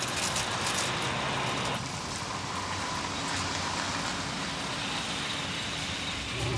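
A car running at low speed, a steady noise with a brighter hiss that drops away about two seconds in.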